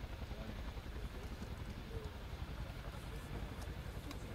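Boeing CH-47 Chinook HC.2's tandem rotors turning, heard as a fast, steady low chop of blade beats.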